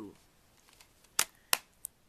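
Plastic DVD case being snapped shut: three sharp clicks in quick succession a little after a second in, the last one quieter.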